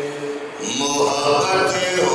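A man chanting a devotional Urdu kalam unaccompanied, holding long sung notes. About half a second in he breaks for a breath, then starts the next phrase on a note that rises and is held.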